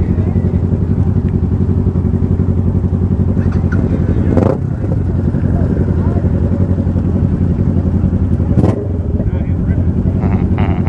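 Motorcycle engine idling steadily close by, with two brief sharp noises, one about four and a half seconds in and one near the end.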